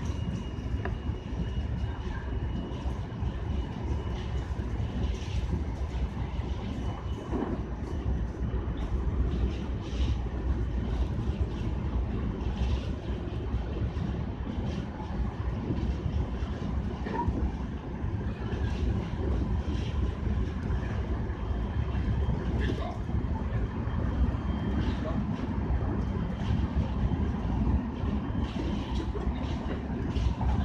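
Running noise of a JR West Special Rapid electric train at speed, heard from the front of the train: a steady low rumble of wheels on rail with irregular light clicks and knocks. A faint thin high whine fades out about halfway through.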